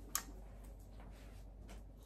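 One short, sharp click just after the start, over faint room tone with a steady low hum.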